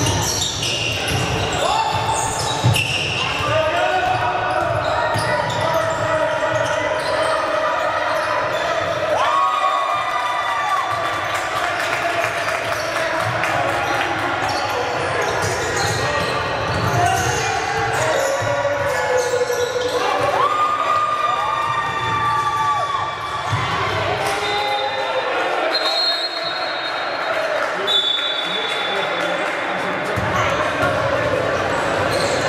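Basketball game on a hardwood court: a ball dribbled and bounced, many short sneaker squeaks on the floor, and players' voices calling out.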